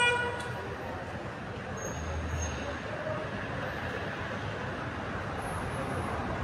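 A short car horn toot at the very start, the loudest sound, fading within half a second, then steady street traffic noise with a low rumble about two seconds in.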